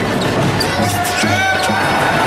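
Live basketball arena sound: crowd noise with a few sharp knocks on court, mixed with music.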